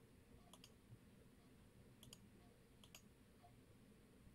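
Faint computer mouse clicks in near silence: three quick pairs of clicks, about a second apart.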